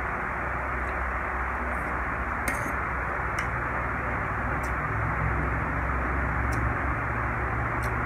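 Steady background hiss and low hum, with a few faint, short clicks of a metal spoon against a plate as a man eats.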